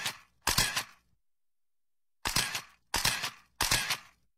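A camera-shutter-like click sound effect, dubbed in during editing, repeats five times: two close together at the start, then three in quick succession about two seconds in. Each is a short, sharp burst with dead silence between.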